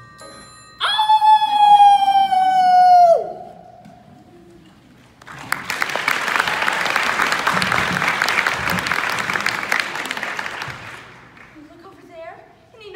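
A long, howl-like vocal cry, held about two seconds, slowly sinking in pitch and then dropping away at the end. After a short pause, about six seconds of applause follow.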